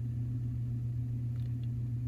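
Steady low hum that holds one pitch throughout, with a couple of faint light ticks about one and a half seconds in.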